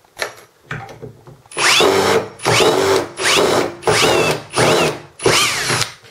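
Cordless drill driver running in about five short bursts, each rising then falling in pitch, as it drives a wood screw into a timber batten.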